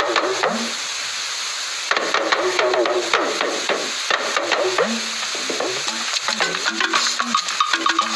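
Juju music led by a talking drum whose pitch bends up and down, over dense shaker-like percussion. Near the end more instruments join with short, stepped notes.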